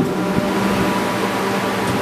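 Steady low hum with an even hiss, unbroken for the whole two seconds.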